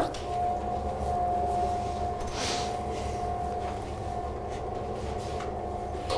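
Electric motor of a motorised projection screen running steadily as the screen rolls up: a constant whine over a low hum.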